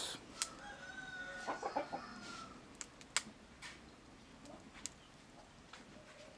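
A rooster crowing faintly, one long call starting about a second in. A few sharp crackles from a wood fire come now and then.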